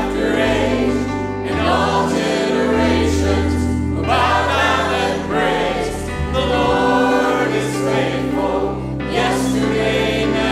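Church choir with three lead singers on microphones singing a contemporary worship song in harmony, over an accompaniment of sustained bass notes that shift every second or two.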